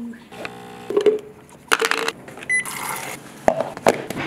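illy capsule espresso machine at work: a buzzing pump for about a second, then a short high beep about two and a half seconds in, followed by a brief hiss.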